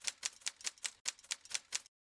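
Typing sound effect: a quick, even run of sharp key clicks, about five a second, that stops short just before the end.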